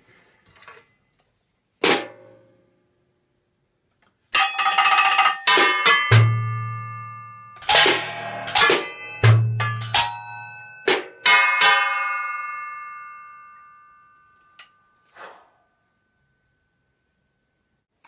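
Junk-percussion drum kit played with sticks: a single hit, then a short run of strikes on an upturned metal fruitcake tin that rings on with bell-like tones, dying away over a few seconds. Two deep bass-drum thuds fall in the middle, and two faint taps come near the end.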